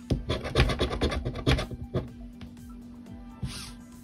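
A coin in a plastic capsule scraping the latex coating off a scratch-off lottery ticket in quick back-and-forth strokes for about the first two seconds, then fading to a few light scrapes. A steady low hum runs underneath.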